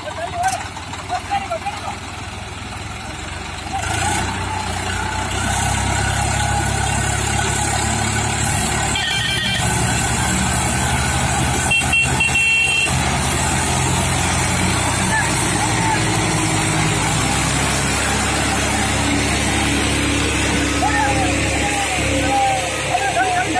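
Diesel tractor engines, a Swaraj 744 FE towing a Mahindra tractor and its stuck, sugarcane-loaded trailer, working hard under load. The engine noise rises about four seconds in and then holds steady and loud.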